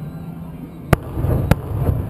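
Aerial firework shells bursting: two sharp bangs a little over half a second apart, about halfway through, then a low rumbling of further bursts.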